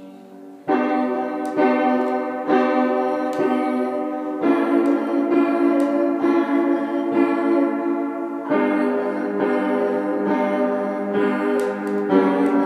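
Upright piano played in slow chords: a fading chord, then a loud chord struck just under a second in, with chords restruck about once a second and the harmony changing about four and eight seconds in.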